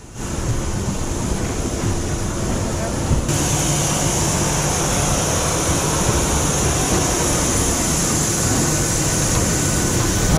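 Steady running noise of a parked Boeing 737 on the apron, heard from its doorway. About a third of the way through it steps up with a strong high hiss as the open air outside the door is reached.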